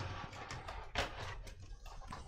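Light clicks and knocks of a 240 mm AIO liquid-cooler radiator being handled and offered up against the top of a steel PC case, with the sharpest knock about a second in.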